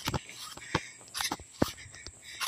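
Footsteps on grass: a few soft, irregular thuds and rustles from someone walking across a lawn.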